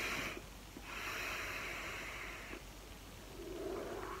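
Breathy hiss of a drag on a dual-coil rebuildable vape and the long exhale of vapour. The second hiss lasts nearly two seconds.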